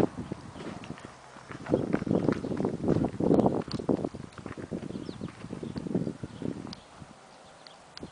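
Footsteps of a person walking backward across a paved lot, with uneven rustling gusts of noise on the microphone that fall quieter near the end.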